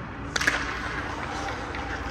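Sharp crack of a hockey stick striking a puck, about half a second in, followed by a couple of fainter clicks, over the rink's steady low hum.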